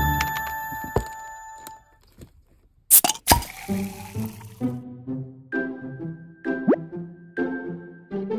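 Edited-in background music: a chiming jingle dies away, a sharp double click follows about three seconds in, then a light, cheerful tune with a steady beat begins, with a quick rising slide near the end.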